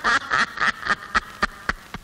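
A rapid, irregular string of short, nasal, duck-like quacking noises, about four a second, fading toward the end.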